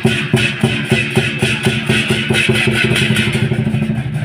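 Lion dance percussion: a big Chinese drum with clashing cymbals playing a fast, steady beat of several strokes a second.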